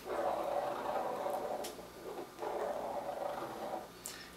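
Pen tip scratching across paper as the pen is swept round in a circle, pivoting on a chain of magnets. The scraping runs in two stretches, with a short break about two seconds in.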